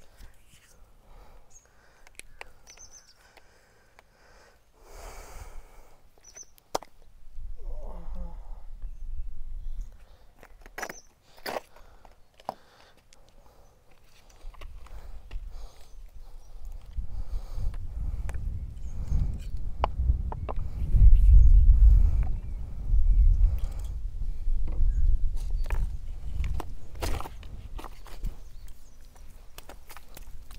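Hands working on a person's oiled back and shoulders during a massage, with scattered short clicks and pats. A low rumble builds through the second half.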